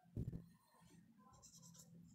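Marker pen writing on a whiteboard, faint, with light squeaky scratching strokes in the second half. A soft knock comes just after the start.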